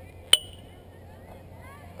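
A single sharp metallic clink about a third of a second in, ringing briefly at a high pitch, as from a metal object struck once.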